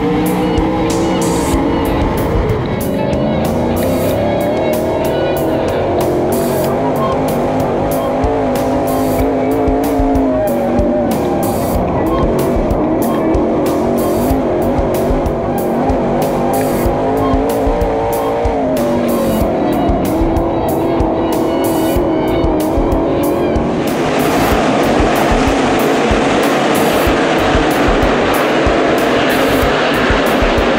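Dirt late model race car's V8 engine running hard, its pitch repeatedly climbing and falling as the revs go up and down, heard together with music. About 24 seconds in the sound turns into a broader, noisier roar of racing cars.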